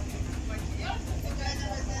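Steady low rumble of a boat's engine under way, with people talking faintly in the background.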